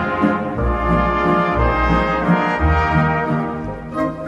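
Background music led by brass instruments, playing a melody over a low bass line.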